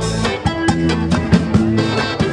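Live band music: electric guitar, drum kit and accordion playing an upbeat number, with quick, evenly spaced drum hits over held low notes.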